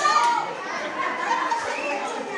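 Overlapping voices of a crowd with children among them, echoing in a large hall.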